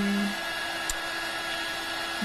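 Craft heat gun blowing steadily, a fan-driven rush of hot air with a faint steady hum, heating clear gloss embossing powder on card.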